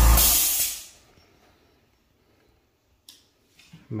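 Small one-gallon air compressor switched off: its motor runs down to silence within about a second, with a short hiss as it stops. A sharp click comes about three seconds in, and the motor starts up again right at the end.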